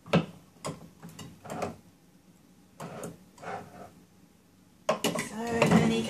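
Quiet, indistinct voices talking in short bits with a few light knocks, then louder speech from about five seconds in. No candle crackling is heard.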